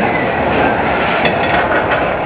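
Steel roller coaster train rolling along its track overhead, a loud, steady rumble of wheels on steel rails.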